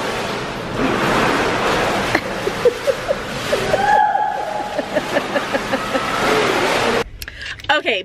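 Pool water splashing hard as children splash each other, mixed with children's shouts and squeals. It cuts off suddenly near the end, leaving a quieter stretch with a few clicks.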